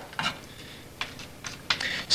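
A few irregular sharp taps and clicks of something hard on the desk surface, about four or five strikes spread over two seconds.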